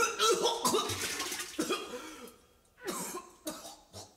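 A man coughing several times, with short vocal sounds between, fading out about two and a half seconds in; a few more brief coughs follow near the end.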